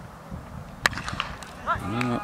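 Cricket bat striking the ball once: a single sharp crack about a second in, off a shot that was not middled. A short shout, rising and falling, follows near the end.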